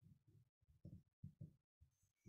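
Near silence, with a series of faint, low thumps.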